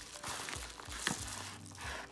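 Yellow padded paper mailer envelope crinkling and crackling as it is handled and pulled open, with one sharper crackle about a second in.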